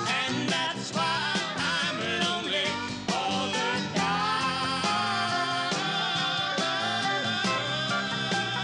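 Country band music: a man and a woman singing in harmony over a strummed acoustic guitar and a full band, with drums keeping a steady beat.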